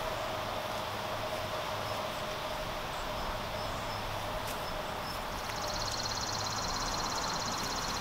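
Outdoor rural ambience: a steady background hiss, joined about two-thirds of the way in by a high, rapidly pulsing insect buzz.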